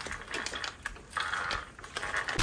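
Faint, light plastic clicking and a brief soft rub as a hand turns the knobby front tyre of an HBX 2996A 1:12 RC truck.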